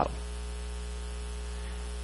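Steady electrical mains hum with a faint hiss, unchanging through the pause.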